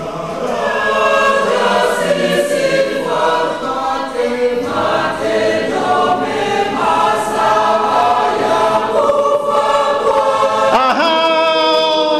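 Church congregation singing a short refrain together. Near the end a single voice rises and holds a note above it.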